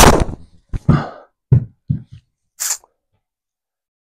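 A driver strikes a golf ball off a tee, the ball smacking into the simulator screen a split second later, as one loud, sharp hit. A few short, quieter sounds follow within the next two seconds.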